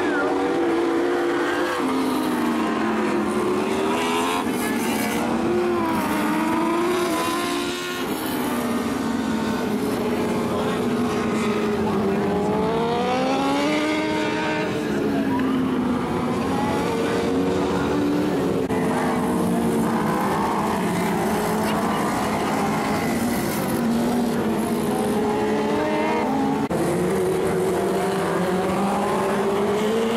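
Several winged sprint car engines racing together on a dirt oval, their pitches overlapping and rising and falling again and again as the cars accelerate and back off.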